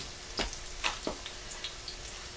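Cauliflower fritters frying in oil in a pan, with a steady soft sizzle and a few light clicks.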